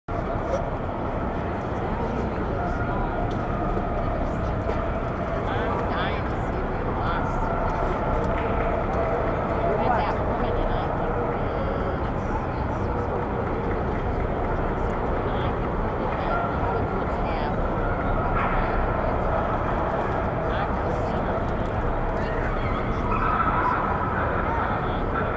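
Steady background hubbub of many indistinct voices, with a few faint clicks scattered through it.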